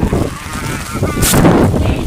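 Gusty wind buffeting a phone's microphone, a loud low rumble that swells to its loudest about a second and a half in. A faint, brief wavering pitched sound comes through it near the middle.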